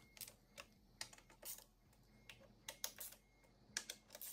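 Faint, irregular light clicks of a ratchet and small bolts while the plastic side cover of an electric dirt bike is fastened back on, snugged only lightly.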